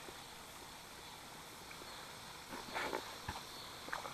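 Faint, steady outdoor background noise. About two and a half seconds in comes a brief rustle, followed by a single sharp knock.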